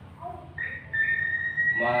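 A thin, high whistle-like tone starts about half a second in and holds steady while rising slowly in pitch, over a low background hum.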